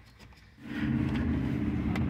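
A motor starts up suddenly about half a second in and runs loudly at a steady low pitch.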